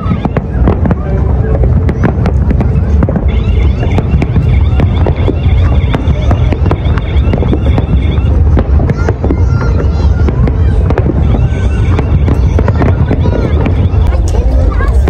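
Fireworks display with many shells bursting in quick succession: dense overlapping bangs over a continuous low rumble.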